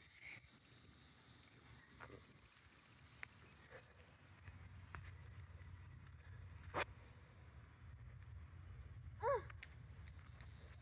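Faint outdoor ambience: a few light scattered taps, a low rumble setting in about halfway through, and one short high call with a falling pitch near the end.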